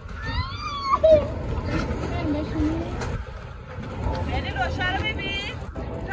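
People talking on an open dock, with high-pitched voices heard at the start and again near the end, over a steady low rumble.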